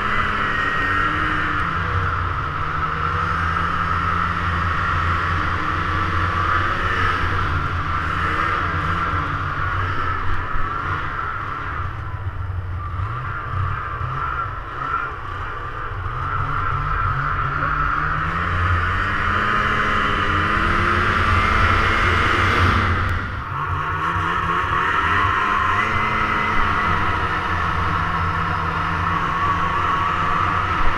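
Snowmobile engine and track running at speed, heard from on the sled, the engine pitch rising and falling with the throttle. It climbs in the middle, eases off briefly about three quarters of the way through, then picks up again.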